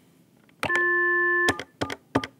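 Avaya 1416 desk phone's speaker playing a steady dial tone for under a second after going off-hook. The tone cuts off as keys are pressed, followed by a few short key clicks while the voicemail code is dialled.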